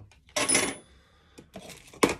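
Hand tools and kit clattering as they are handled on a workbench: a short clatter with a brief metallic clink about half a second in, quieter handling, then a sharp knock near the end.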